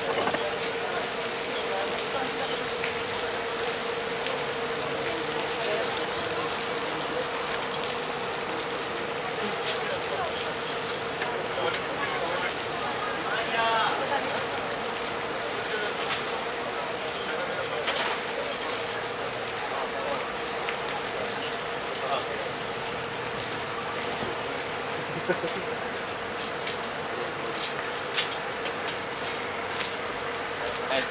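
Steady outdoor background hiss with a constant mid-pitched hum and faint, indistinct voices now and then. There is a sharp click a little past the middle.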